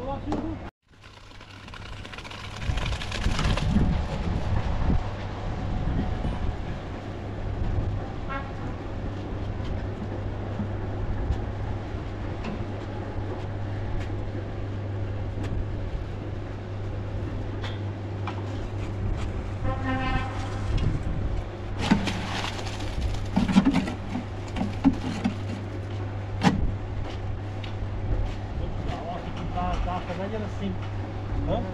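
Electric bucket hoist on a building site running with a steady low hum as it lifts a bucket of concrete, with scattered knocks and clanks. The sound drops out briefly just under a second in, and a short pitched call or horn-like tone sounds about 20 seconds in.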